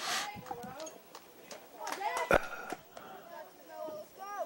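Distant voices of youth ballplayers and spectators calling out, with one sharp knock a little past two seconds in.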